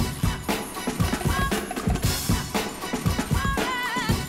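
Breakbeat music played by a DJ, with a heavy drum beat of about two hits a second and a short wavering melodic riff that comes back about every two seconds.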